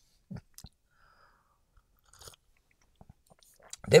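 A few faint, scattered small mouth noises and clicks, like lip smacks and a swallow, close to the microphone, with a man starting to speak at the very end.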